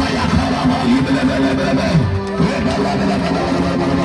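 Live worship music with many voices sounding at once, steady and loud, with held notes and wavering sung pitches.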